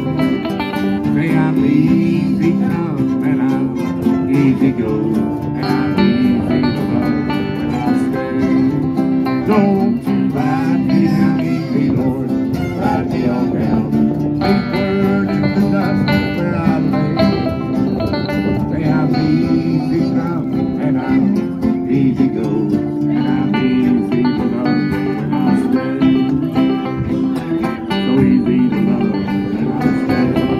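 Bluegrass string band playing an instrumental passage, with banjo picking and fiddle over the steady accompaniment, with no singing.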